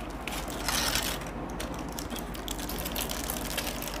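Aluminium foil being peeled back and crinkled off a cake: a dense run of crackles, loudest just before a second in.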